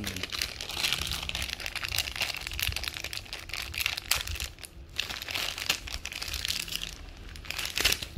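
Clear plastic bag crinkling as it is handled, a dense run of crackles with brief pauses about four and seven seconds in.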